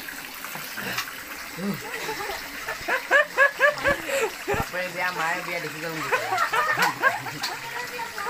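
Water running and splashing from an outdoor tap, with a person's voice over it: a quick run of short, repeated cries about three seconds in, then wavering, drawn-out vocal sounds.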